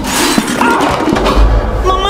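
A sudden crash with a shattering sound right at the start, dying away over about half a second, over background music.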